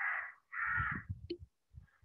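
Two harsh bird calls in quick succession, each about half a second long, with a faint low rumble under the second.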